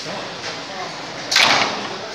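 Green corrugated plastic fencing sheet being handled, giving one sudden sharp swishing crack a little past halfway through.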